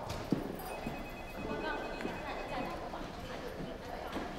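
Footsteps on a hard indoor floor: a few faint, short steps over low room tone.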